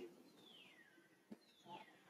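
Two faint high-pitched calls, each gliding steadily down in pitch over most of a second, about a second apart, with a single click between them.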